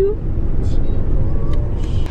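Steady low road rumble inside a moving car, from engine and tyres at cruising speed.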